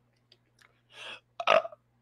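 A man burps once, a short weird burp about a second and a half in, after a faint breath.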